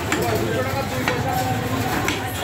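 Butcher's knife cutting goat meat on a wooden log chopping block, the blade knocking on the wood about once a second, three times, over a steady low background hum.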